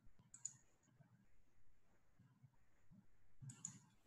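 Near silence with a few faint clicks, once about half a second in and again near the end.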